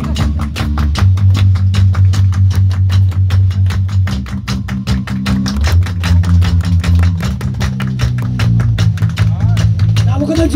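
Live rock-and-roll band playing, the drum kit close up and loud, beating out a fast even rhythm of about six hits a second over a moving bass line and guitar.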